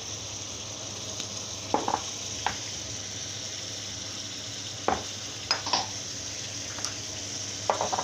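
Minced beef and chicken pieces frying in oil in a pan, a steady sizzle throughout. A few sharp knocks against the pan come about two seconds in and again around five to six seconds in.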